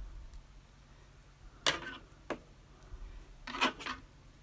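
Thin baling wire being twisted and bent by hand: a few short scraping clicks, the loudest about one and a half seconds in, another just after, and a quick cluster near the end.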